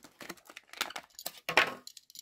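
Thin plastic blister packaging clicking and crinkling in the hands as a 1/64 diecast car is pulled out of it, with a series of small clicks and a louder rustle about one and a half seconds in.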